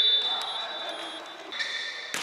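Basketball game sounds in an echoing gym: a high, steady tone fading out in the first second, with players' voices and ball and shoe noise.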